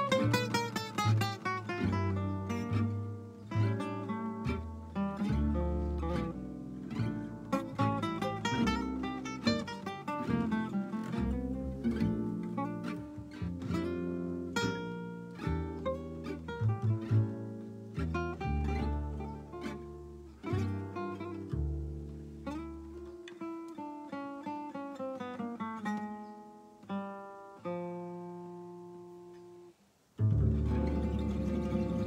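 Acoustic jazz trio playing: two acoustic guitars plucked and strummed over an upright double bass. Near the end the notes thin out to a last few ringing tones and fade away.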